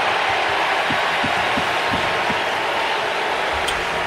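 Steady crowd noise from a full hockey arena, many voices blended into an even wash, with a few faint low knocks in the first couple of seconds.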